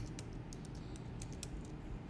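Typing on a computer keyboard: scattered, irregular key clicks over a steady low hum.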